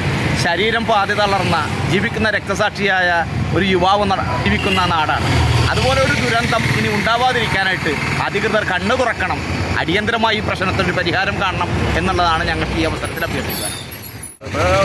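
A man speaking Malayalam, with road traffic running behind him as a low rumble that swells about five seconds in.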